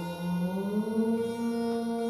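Eerie film-score music: a low, chant-like droning tone that slides up in pitch over the first second and then holds steady, under held ringing tones.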